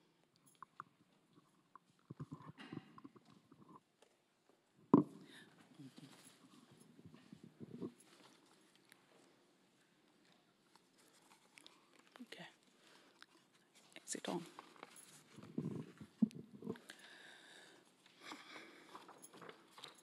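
Handling noises at a lectern microphone as a book is picked up and opened: faint rustles and soft knocks, with one sharp knock about five seconds in, and quiet murmured speech near the end.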